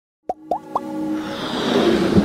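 Intro sting of an animated logo: three quick rising pops about a quarter second apart, then a held tone and a swelling rush of noise that builds toward the end.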